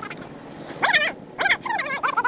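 Several short, high-pitched animal calls in quick succession, starting a little under a second in, each one bending in pitch.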